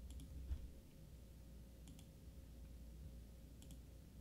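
A few faint, separate computer mouse clicks over a low room hum, a second or more apart, with two close together near the end.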